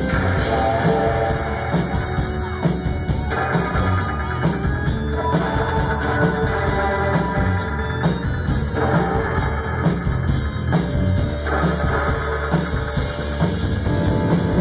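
Live rock band playing an instrumental passage with electric guitar and drum kit, steady and loud without a break.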